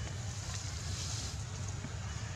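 Steady low rumble with a faint hiss: wind buffeting the microphone.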